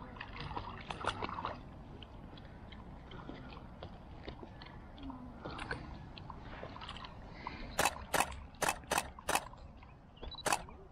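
Standard poodles wading and splashing in shallow lake water, then a quick run of about six sharp clacks near the end.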